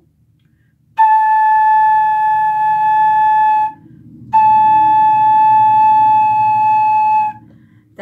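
Metal flute headjoint played on its own, air blown across the embouchure hole: two long, steady notes on the same high pitch, each about three seconds, with a short pause between them.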